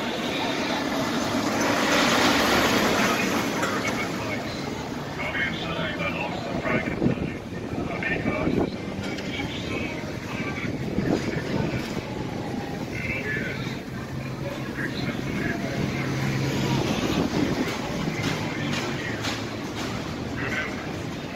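Busy street ambience: a car passes close by, loudest about two to three seconds in, over steady traffic noise and scattered voices of passers-by.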